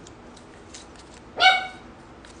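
A small dog gives a single short, high-pitched yip about one and a half seconds in. Before it comes faint crinkling of a folded paper slip being opened.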